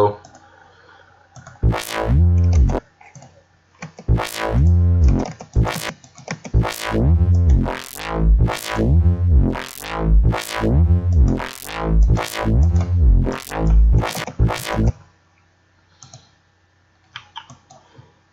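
Synthesized neuro-style bass from a Harmor synth inside Patcher in FL Studio, playing a repeating pattern of about a dozen notes. On each note a band-pass filter sweeps up through the harmonics and back down, driven by automation of an EQ band's frequency. The notes start about two seconds in and stop about three seconds before the end, with a few mouse clicks around them.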